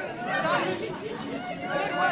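Speech: several people talking, with overlapping voices in a lively exchange.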